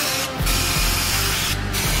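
Aerosol brake cleaner spraying in two bursts, the first about a second long, over background music with a steady beat.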